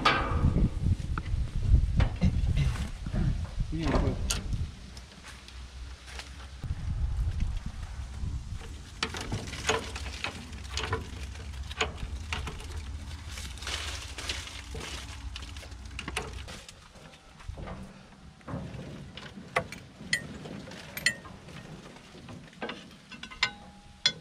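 Scattered metal clicks and knocks from hand tools and a bar working on a forage harvester's roller chain and sprockets, over a low rumble that stops about two-thirds of the way through.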